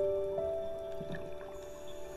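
Slow, soft piano music: a few held notes fade away, with one new note coming in about half a second in.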